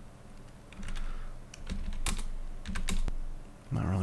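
Typing on a computer keyboard: a few short runs of keystrokes.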